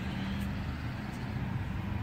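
A steady low engine hum with no change in pitch.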